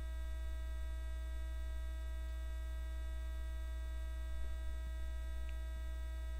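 Steady electrical mains hum with a stack of higher overtones, running unchanged. It is noise in the stream's faulty audio chain, not a sound in the room.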